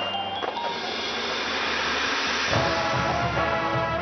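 High school marching band playing: brass over a drumline with bass drums and sousaphones. About two and a half seconds in, the low brass and drums come in heavily under a held chord.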